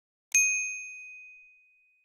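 A single bright bell ding, a notification-bell sound effect for the animated bell icon, struck about a third of a second in and ringing out clear and high as it fades over about a second and a half.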